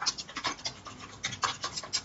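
A quick, irregular run of about a dozen clicks: typing on a computer keyboard.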